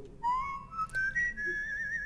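Someone whistling a tune: a phrase of clear notes stepping upward, ending on a held high note with a wavering vibrato.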